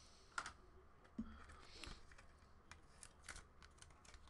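Faint, scattered light clicks and handling noises from a trading card and a clear plastic card holder.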